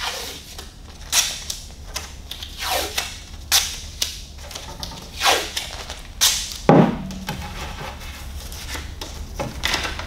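Blue painter's tape pulled off the roll and torn into strips, a sharp rip every second or so, with one louder knock about two-thirds of the way through.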